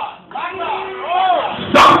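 Brief voices calling out from the congregation in a pause of the preaching, two short rising-and-falling calls over a faint steady tone.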